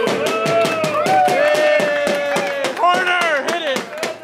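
A group of voices singing a birthday song together, accompanied by quick, steady hand claps and drum beats.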